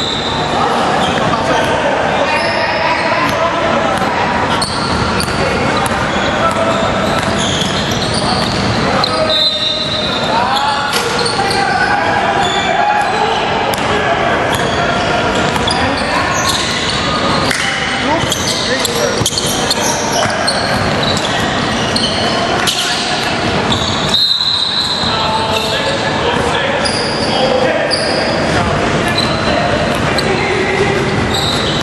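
Basketball bouncing on a hardwood gym floor with indistinct voices echoing through a large hall. Short high referee whistle blasts come near the start, about ten seconds in and about 24 seconds in.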